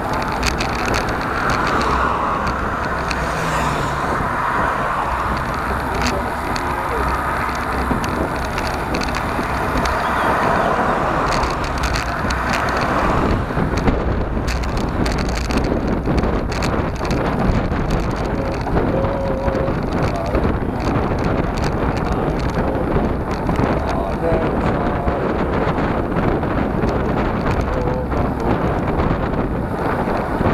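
Wind rushing over a handlebar-mounted camera's microphone on a moving road bike, with steady tyre and road noise and small rattles from the bike.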